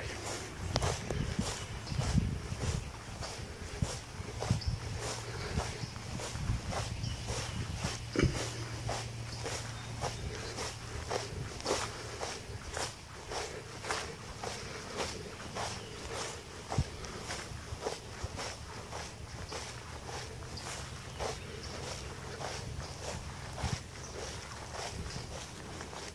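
Footsteps walking steadily across mown grass, about two steps a second.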